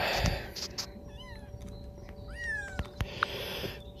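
Two short, high animal calls, each bending down in pitch, the second louder, over a faint steady hum.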